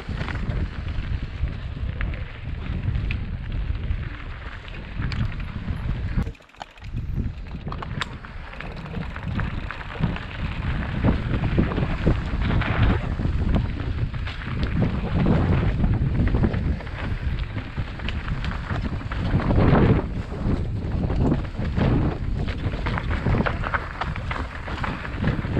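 Wind buffeting a helmet-mounted action camera's microphone over the rumble and rattle of a mountain bike rolling down a rough dirt singletrack, with many small clicks and knocks from the bike and trail. The noise drops away briefly about six seconds in.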